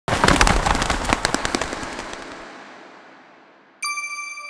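A burst of rapid, sharp crackles and pops, like firecrackers, that dies away over about two and a half seconds. Near the end a bright ringing chime tone begins.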